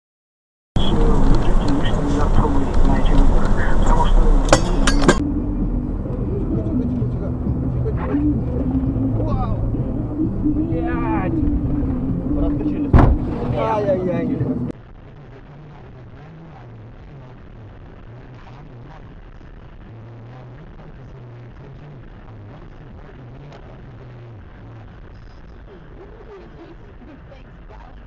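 Loud vehicle and road noise mixed with voices and a few sharp knocks for about the first fifteen seconds, then a sudden cut to much quieter, steady running noise.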